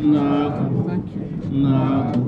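Men's voices calling out two long, drawn-out hails, the second starting about a second and a half in: a traditional salute to the king.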